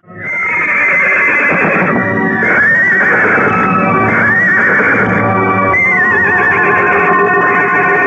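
Film background music with a horse whinnying three times over it.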